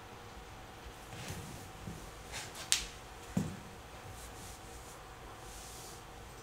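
Quiet room tone with a faint steady hum, broken by two short clicks close together near the middle.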